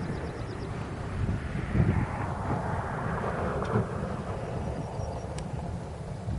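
Wind rumbling on the microphone in the open, with a broad rushing sound that swells about a second in and fades again after a few seconds.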